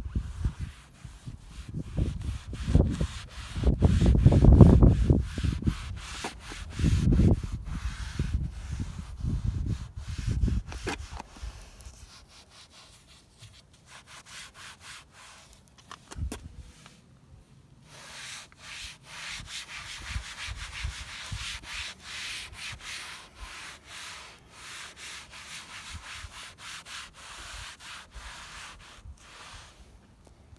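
A foam applicator pad wiping tyre gel onto a black plastic car bumper in quick, repeated rubbing strokes. For the first dozen seconds a loud low rumble covers it.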